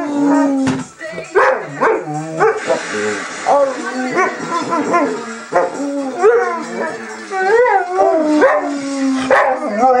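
Basset hound howling in a run of wavering calls that rise and fall in pitch.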